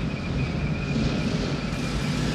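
Engines of an approaching convoy of motorcycles and work vehicles running together: a steady rumble with a thin high whine above it.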